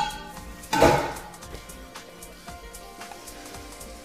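Clatter of a saucepan and utensils on a kitchen counter, with a loud knock about a second in and a few faint clicks after, over light background music.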